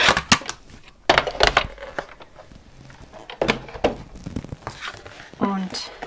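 Hard plastic cutting plates clacking as they are taken apart after a pass through a Big Shot die-cutting machine, a few sharp clacks at the start. Then scattered rustling and crinkling of cardstock being worked loose from a thin metal stitched-rectangle die.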